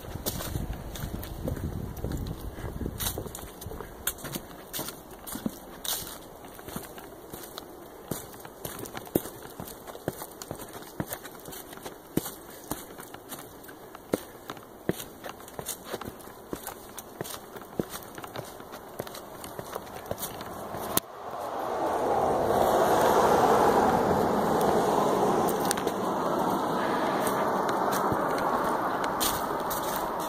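Footsteps on a hiking trail, a quick irregular series of light crunches. About two-thirds of the way through, it cuts suddenly to a louder, steady rushing noise.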